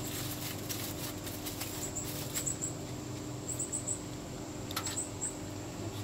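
Faint clicks and light rustling from handling a foil-wrapped brisket on a smoker's metal wire rack, with a few sharper ticks about two and five seconds in, over a steady low hum. Short, high chirp-like squeaks come and go in the middle.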